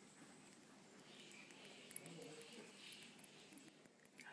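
Baby large-footed myotis (Myotis adversus, a fishing bat) squeaking with its dummy in its mouth: one high, short squeak about half a second in, then from about a second and a half a quick run of sharp squeaks, about five a second.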